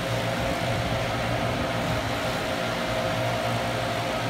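A motor or machine running steadily, a constant hum with one held mid-pitched tone over a low drone and background hiss.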